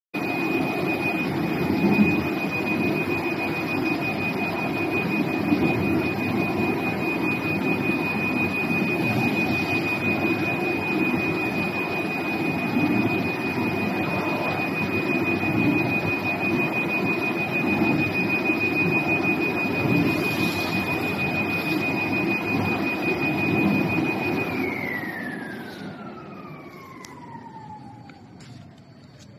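Digital flatbed box sample cutting table running, a steady high whine over a broad mechanical hum. Near the end the whine slides down in pitch and the whole sound fades as the machine winds down.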